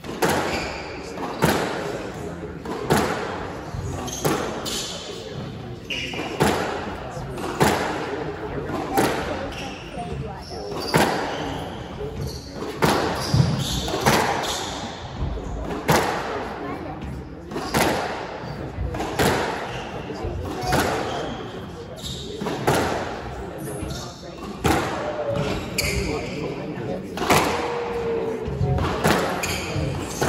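A long squash rally: the ball cracks off the racket strings and the court walls in a steady exchange, a sharp hit about every second and a half. Short squeaks of court shoes on the hardwood floor come between the hits.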